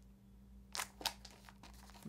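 Clear plastic protective sleeve on a Blu-ray case crinkling as the case is handled and turned over, with two short crackles about a second in.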